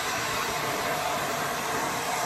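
Hair dryer blowing steadily while a stylist dries and tousles a customer's hair.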